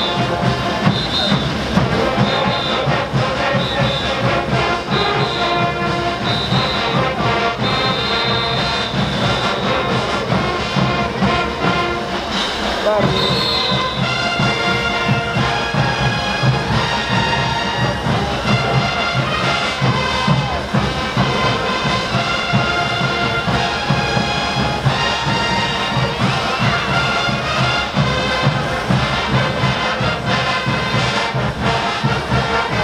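Brass band playing caporales dance music: trumpets and trombones carrying the melody over a steady, driving drumbeat.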